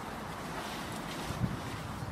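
Wind buffeting an outdoor microphone: a steady noise, heaviest in the low end, with a brief low swell about one and a half seconds in.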